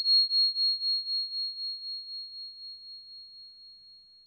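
A single high, pure chime, struck just before and ringing on, slowly fading with a slight waver until it dies away near the end. It is the sound effect of an animated end screen.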